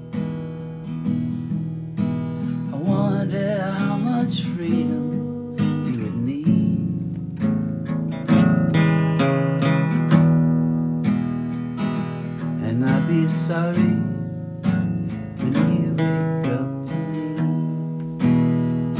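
Yamaha FG-110 acoustic guitar strummed and picked, playing a chord progression through an instrumental passage of a song.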